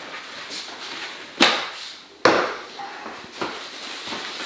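Two short, sharp noises about a second apart, each with a rustling trail; the second fades more slowly.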